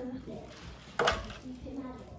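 A single sharp clack about a second in, as a cup of iced water is set down on a stone countertop.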